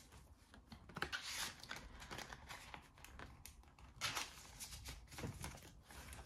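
Faint rustling and crinkling of clear plastic binder sleeves and Australian polymer banknotes being handled, with a few short louder rustles: about a second in, and again around four and five seconds in.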